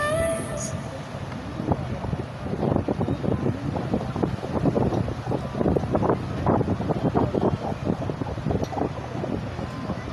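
Wind buffeting the phone's microphone in uneven gusts over the low rush of breaking surf.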